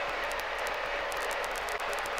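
Steady cabin noise of a single-engine light aircraft in the climb: an even hiss of engine and airflow with no distinct tones or knocks.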